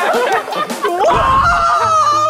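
Several young men laughing loudly, one in a high-pitched laugh that is held long and steady in the second half.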